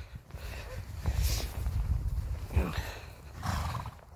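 A horse cantering on a soft arena surface, its hoofbeats muffled under a low rumble.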